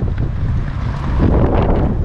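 Strong gusty wind buffeting the camera microphone, a loud, fluctuating low rumble with a stronger gust about a second in.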